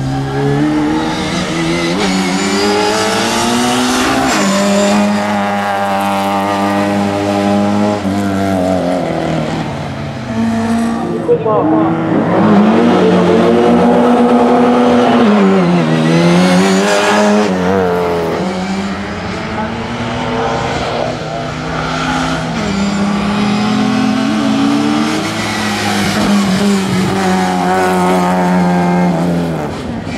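Classic Mini's four-cylinder engine revving hard through a slalom run, its pitch repeatedly climbing and dropping as it accelerates, shifts and brakes for the cones.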